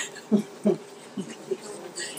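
A woman laughing softly in a few short bursts, over a faint steady hum.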